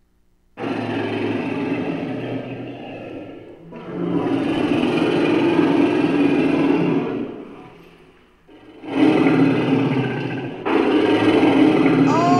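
Recorded lion roaring, several long roars one after another, played back as a sound effect.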